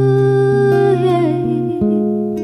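A woman singing a wordless "ooh ooh yeah" line over acoustic guitar chords, her voice sliding down in pitch about halfway through.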